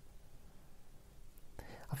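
A pause in a man's slow spoken monologue: faint room tone with a low hum, then his voice comes back in quietly near the end.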